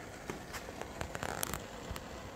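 Faint handling noise: a few light clicks and taps over a steady low background hiss, bunched in the middle.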